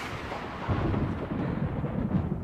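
A low rumble under a hissing wash, growing louder about two-thirds of a second in: a sound effect or music bed playing with an on-screen forecast graphic.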